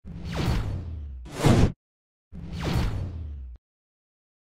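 Sound-effect whooshes for an animated title sequence: a falling sweep, then a short rising swoosh that cuts off suddenly, and after a brief gap another falling sweep.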